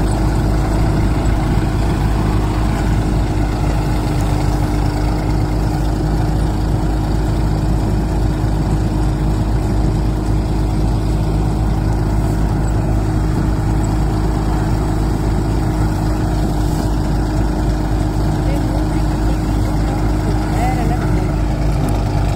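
Tractor-driven groundnut thresher running steadily under load as plants are fed in: a constant engine drone with a steady hum from the machine.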